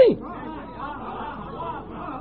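A man's lecturing voice ends a word right at the start, then a pause filled with a faint murmur of other voices in a large hall over low background noise.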